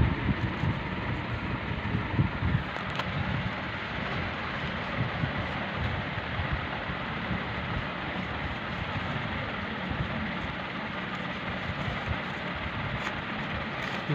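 Paper rupee notes being unfolded and sorted by hand, rustling over a steady background noise, with a few louder handling sounds in the first three seconds.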